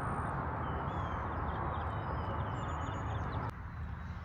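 Small birds chirping over a steady outdoor rushing noise with a deep rumble beneath it. The rushing drops away suddenly about three and a half seconds in.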